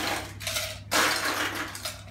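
Ice cubes scooped from an ice bucket and dropped into a stainless steel cocktail shaker, clattering in two bursts about a second apart.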